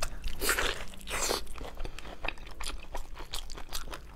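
Close-miked biting and chewing of braised pork knuckle: two loud bites into the skin and meat, about half a second and just over a second in, then a quick run of smacking clicks as it is chewed.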